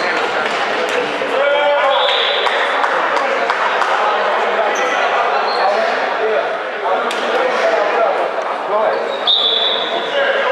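Sound of a handball game in a large sports hall: indistinct voices of players and spectators calling out, a handball bouncing on the wooden floor, and sharp knocks echoing in the hall. Two short high-pitched tones come about two seconds in and again near the end.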